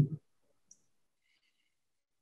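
The end of a man's hesitant hum, then near silence broken by one short, faint click.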